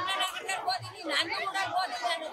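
A woman speaking into a reporter's microphone, with other voices chattering around her.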